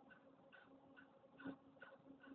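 Near silence, with faint, regular ticking two or three times a second and one slightly louder click about one and a half seconds in.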